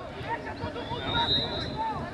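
Distant voices of players and spectators calling out across an open football pitch, with low wind rumble on the microphone and a faint, thin high tone lasting about a second midway.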